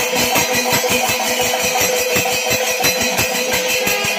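Kerala temple percussion ensemble playing: rapid drum strokes, several a second, over the continuous clash of hand cymbals, with a steady held wind-instrument note.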